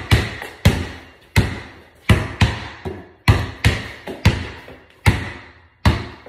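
Basketball being dribbled on a garage floor: about a dozen bounces at an uneven rate of roughly two a second, each a sharp smack followed by a short echo.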